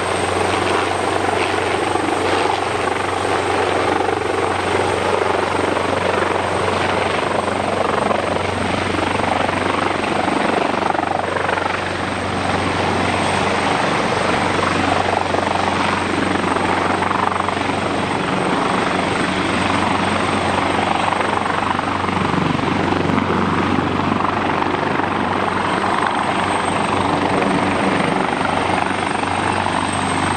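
AgustaWestland AW139 helicopter flying low and close, its five-blade main rotor and twin turboshaft engines making a loud, steady sound with a steady high whine on top.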